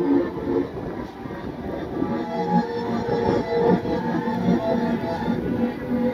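Music playing, mixed with a steady rumbling noise.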